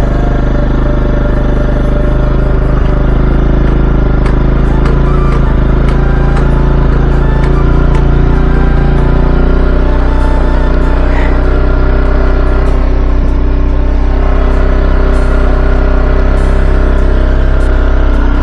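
Bajaj Pulsar NS200's single-cylinder engine running steadily on choke, a cold start after standing unused for a long time, under background music.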